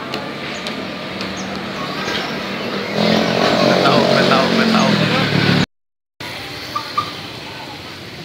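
Elevated monorail train passing overhead: its running noise swells about three seconds in, with a low hum that sinks slightly in pitch, and cuts off suddenly.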